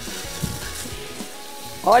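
Chicken pieces braising in wine in a stainless steel pot, sizzling while being turned over with two metal spoons, with a few light spoon knocks against the pot.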